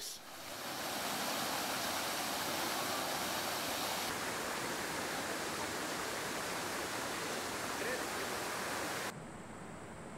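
Fountain jets splashing into a shallow pool: a steady rushing of falling water, which drops away to a quieter background near the end.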